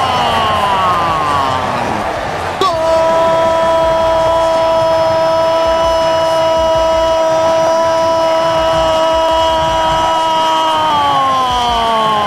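Football TV commentator's drawn-out goal cry: a falling shout in the first two seconds, then a single shouted note held steady for about eight seconds before it slides down in pitch near the end.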